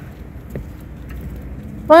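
Low steady outdoor background rumble with a faint tap about half a second in, and a woman's voice saying "What?" near the end.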